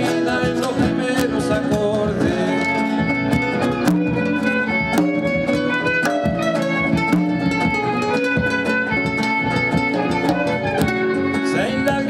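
Live acoustic band music: a bowed violin holds long melody notes over strummed acoustic guitars.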